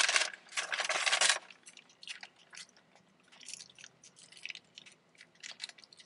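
Close-miked chewing of a Taco Bell breakfast Crunchwrap. There is loud, dense crunching for about the first second and a half, then quieter chewing with small crisp crackles.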